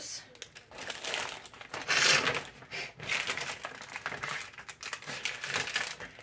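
Small plastic jewelry packets crinkling and rustling as they are handled, in an irregular run of crackles with the loudest stretch about two seconds in.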